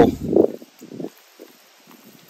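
Soft, wet squishing and tearing of a cooked ham being pulled apart by hand, a few faint, short sounds.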